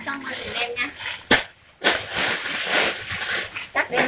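A clear plastic bag of clothing crinkling as it is handled, a dense rustle lasting about two seconds, preceded by one sharp click about a second in.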